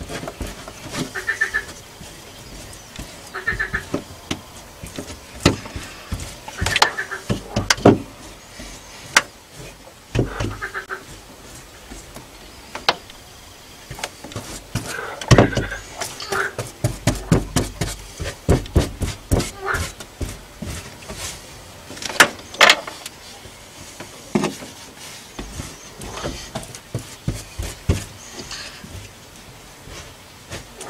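A brush dabbing and pressing fibreglass resin into a glass-fibre mat patch over a hole in a car's steel floor pan: irregular taps and knocks, loudest around the middle, with short squeaky, sticky sounds every couple of seconds in the first half.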